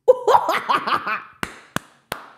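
A woman laughing excitedly, then clapping her hands, two sharp claps near the end in a steady beat.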